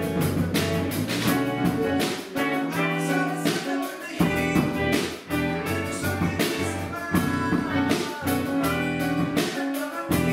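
A rock band playing live together: drum kit keeping a steady beat under electric guitar.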